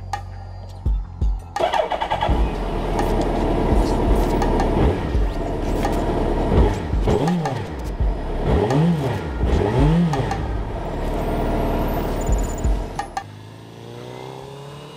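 Suzuki Hayabusa inline-four motorcycle engine starting and then being revved in several quick blips, each climbing and falling in pitch, with music underneath. The sound comes in suddenly about a second and a half in and drops away shortly before the end.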